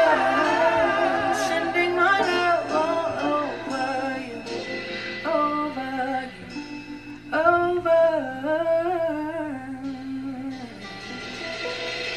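A solo female voice singing slow, drawn-out phrases with wavering held notes over sparse, quiet accompaniment. There are three phrases with short breaks, and the longest is held near the end.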